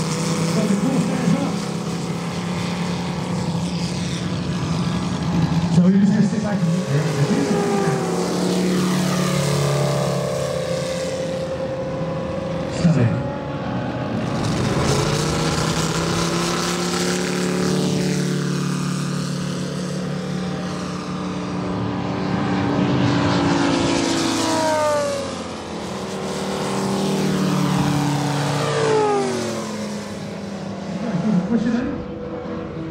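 Moki 250cc radial engines of giant-scale RC warbirds running as the planes taxi and take off, their pitch rising and falling repeatedly as the throttle changes and the planes pass.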